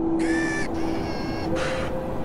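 A steady low drone of two held tones, with a short harsh, pitched call like a crow's caw about a quarter second in and a brief burst of hiss near the end.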